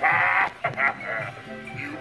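Recorded voice of an animatronic Halloween clown prop laughing in choppy bursts over spooky background music, louder at the start.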